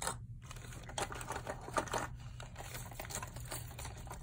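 Metal costume jewelry clicking and clinking in quick, irregular taps as a hand rummages through a pile, with plastic zip bags rustling.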